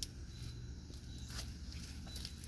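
Quiet, steady low rumble, with a faint click at the start and another a little past halfway.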